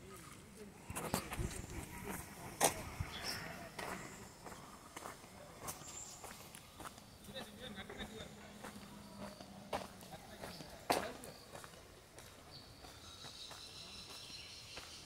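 Irregular footsteps and clicks from someone walking with a handheld camera. The loudest knocks come about a second in, near three seconds and near eleven seconds. Faint voices can be heard in the background.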